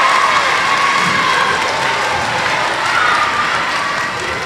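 Audience applauding steadily, with some cheering voices mixed in, echoing in a school gymnasium.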